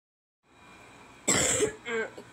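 A person coughs once, a short loud burst just over a second in, after faint room hiss; a voice starts just before the end.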